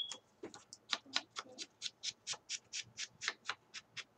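A handheld paper distressing tool scraped along the edge of cardstock, in quick short strokes, about five a second, roughing up the edge of the album cover.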